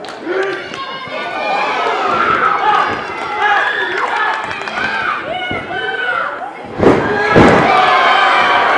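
Live crowd shouting and cheering, many voices overlapping. Near the end, two heavy thuds about half a second apart as a wrestler is slammed onto the ring mat.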